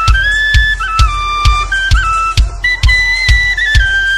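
Celtic punk instrumental break: a high flute-like melody over a steady, heavy kick-drum beat of about two beats a second.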